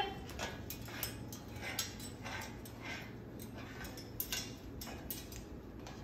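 Moluccan cockatoo's claws and beak making faint, irregular clicks and taps as it walks across a hardwood floor and clambers up onto a metal chair.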